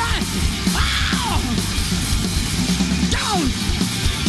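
Sleaze-rock band playing a passage with no sung words: loud, distorted hard-rock guitars over bass and drums. A lead line glides up and down in pitch several times, falling steeply near the end.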